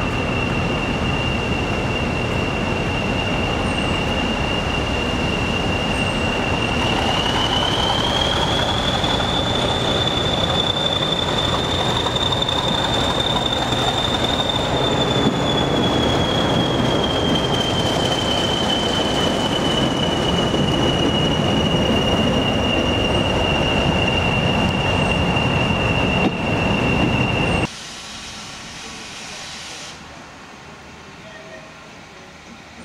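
English Electric Class 40 diesel locomotive running under power, its engine rumble topped by the high, steady turbocharger whistle these locomotives are known for. The whistle rises in pitch about seven seconds in as the engine is opened up, holds, then slowly sinks back. The sound cuts off abruptly near the end.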